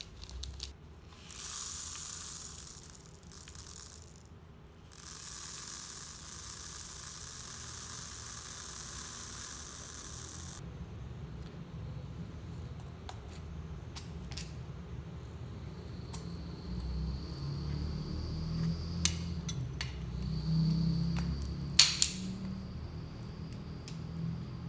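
Blue desiccant beads poured from a plastic bag into a clear air-filter bowl: a brief pour, then a steady hissing rattle for about five seconds that stops suddenly. Then clicks and knocks as the filled bowl is handled and fitted back onto the filter housing, with one sharp click near the end.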